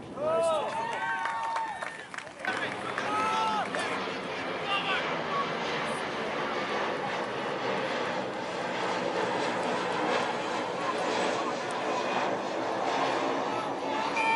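Shouting voices at an outdoor youth soccer match: loud, long calls in the first two seconds, then scattered shorter shouts from players and spectators over a steady rushing background noise.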